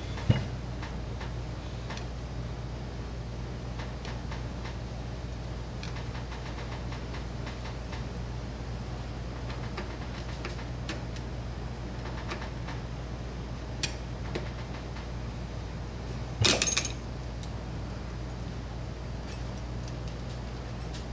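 Light metal clicks and small handling noises from a carburetor's electric choke and hand tools being worked on a bench, with a short, louder metallic clatter about three-quarters of the way through, over a steady low hum.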